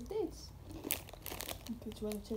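Plastic snack packet crinkling as it is handled, with the loudest rustle about a second in.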